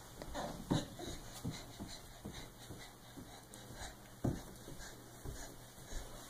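Faint, irregular short breathy sounds and soft taps from a baby crawling on a woven rug, a few a second, with one louder one about four seconds in.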